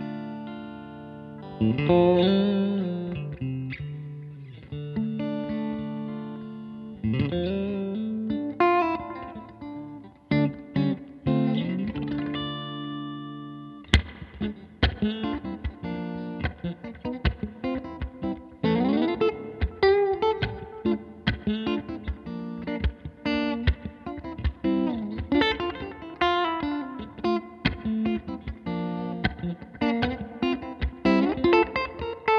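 Guild Surfliner Standard solidbody electric guitar, with an LB-1 mini humbucker and two single coils, played clean through a 1964 Fender Vibroverb tube amp. It starts with ringing chords and string bends and slides. A sharp click comes about 14 seconds in, followed by quicker single-note picking.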